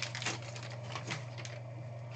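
Hands unwrapping a trading-card pack: plastic wrapper crinkling and a few light clicks of hard plastic graded-card cases, over a steady low hum.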